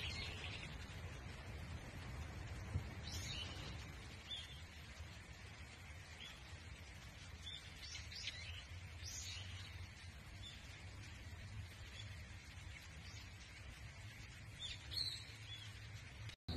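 Wild birds calling in woodland: faint, short chirps and calls come scattered and unevenly spaced, over a low, steady rumble.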